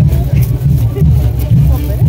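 Brass band playing chinelo brinco music, with a heavy low beat from tuba and bass drum, cymbal strokes on top, and crowd voices mixed in.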